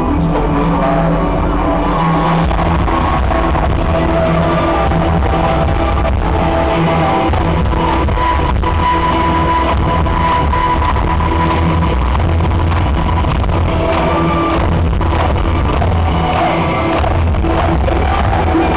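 Live power metal band playing loud through a concert PA, with drums and electric guitar. A lead line holds a long note partway through.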